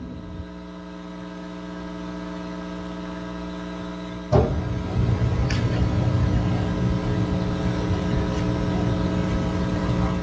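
Steady electrical hum on the meeting's microphone feed. About four seconds in comes a knock, then a louder low rumble of microphone handling noise.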